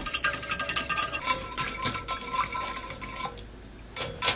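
A metal utensil stirring sauce in a stainless steel saucepan, with quick irregular clinks and scrapes against the pan and a faint ringing from the metal. The stirring stops a little before the end. It is the mixing-in of olive oil that keeps the sauce emulsified.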